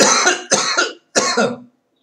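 A man coughing three times in quick succession, loud and harsh.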